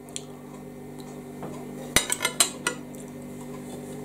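A metal fork mixing food in a dish, with a few sharp clinks against the dish about halfway through. A steady low buzz from a freezer runs underneath.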